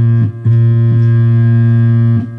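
Home-built analog modular synthesizer sounding one low, steady bass note with a buzzy stack of overtones, cut off and re-struck about a quarter second in and again near one second.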